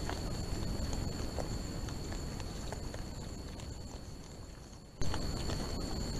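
Feral hogs shuffling and rooting on dry ground, with scattered sharp clicks and scuffs, heard through a trail camera's microphone over a constant low rumble and a steady high-pitched hum. The sound fades down and then comes back abruptly about five seconds in.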